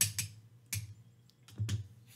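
Light clicks and taps of bar tongs and a cocktail skewer against glassware as cherries are placed, about four separate clicks in two seconds.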